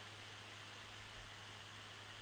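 Near silence: room tone, a faint steady hiss with a low hum underneath.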